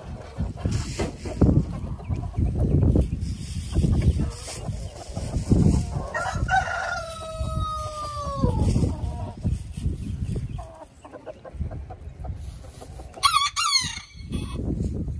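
Chickens around a feeding spot: a rooster crows once, a long call of about two and a half seconds starting about six seconds in and dropping in pitch at the end. Hens cluck quietly, a short burst of high calls comes just before the end, and low rustling and bumping noise runs throughout.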